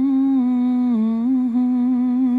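A man's voice humming one long held note in an unaccompanied chanted psalm refrain, with a slight dip in pitch about a second in.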